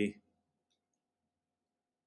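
The tail of a spoken word, then near silence: faint room tone with a thin steady hum and a tiny click about two-thirds of a second in.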